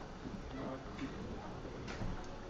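Low room noise in a pause, with a few faint, irregularly spaced clicks.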